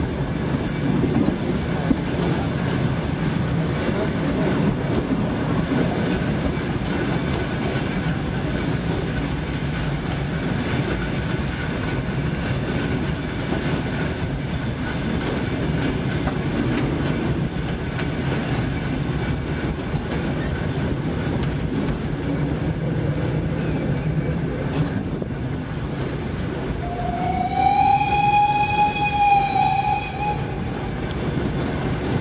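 A train running slowly along the track with a steady low rumble, then near the end one long whistle blast that rises slightly at the start and holds, sounded as a warning approaching a level crossing.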